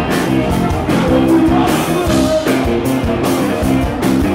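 Live rock band playing loudly, with electric guitar chords over a steady beat.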